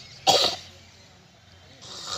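A man retching: a sharp, loud heave about a quarter of a second in, then a second, longer heave starting near the end. It is the retching of vomiting brought on by running.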